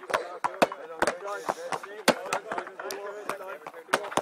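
Hurleys striking balls and balls bouncing on tarmac during a hurling drill: a quick, irregular run of about fifteen sharp knocks, with voices in the background.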